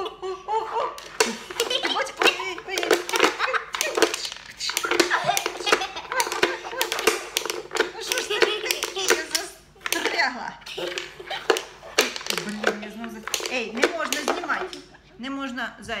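Klask board game in fast play: the ball and strikers clicking and knocking rapidly against the board and its wooden rim, over laughter and voices.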